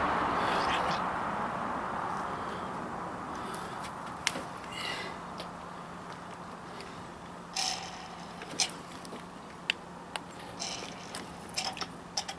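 Quiet background: a broad rushing noise fades away over the first few seconds, leaving a faint steady hum, with a few faint, separate clicks and knocks later on.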